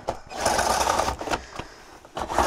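The pleated blackout blind of a Dometic RV window being slid open by hand, a rattling swish that lasts about a second.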